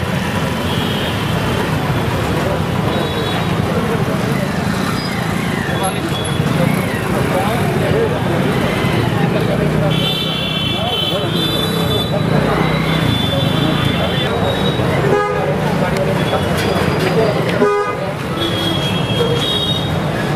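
Busy street traffic with vehicle horns honking several times, a cluster of horn blasts about halfway through, over indistinct chatter of people.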